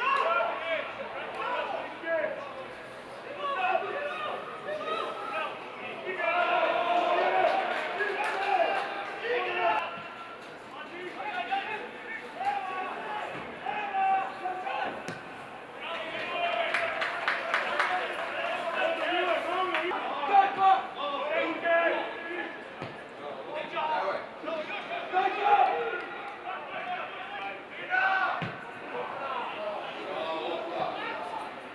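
Footballers shouting and calling to one another on the pitch, with occasional sharp thuds of the ball being kicked. There is no crowd noise, as the stands are empty.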